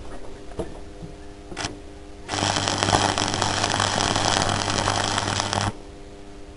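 Electric arc welding of steel nuts on a bolt: a steady crackling hiss with a low hum. It starts about two seconds in and cuts off sharply after about three and a half seconds.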